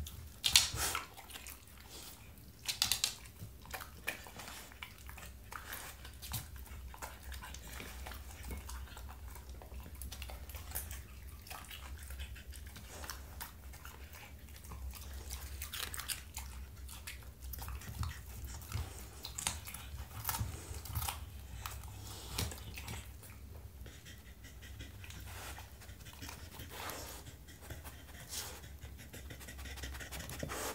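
A Spanish water dog eating raw vegetables: irregular crunching and chewing throughout, with a few loud, sharp crunches in the first three seconds.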